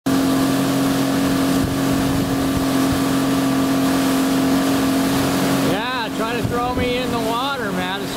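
Suzuki outboard motor running steadily at planing speed, with wind and rushing water. About six seconds in, the engine sound thins and a person starts talking.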